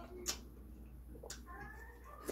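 Wet mouth smacks from chewing a piece of pineapple, two short sharp smacks about a second apart. A faint, drawn-out high-pitched sound comes in near the end.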